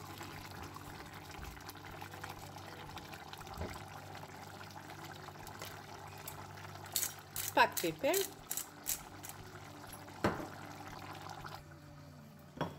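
Pan of green bean and carrot stew simmering with a steady bubbling hiss, which stops near the end. A few sharp knocks, like a spatula against the pan, come between about seven and ten seconds in.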